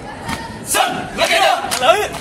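A drill troop shouting a chant together in unison: loud group yells that start a little under a second in and carry on to the end.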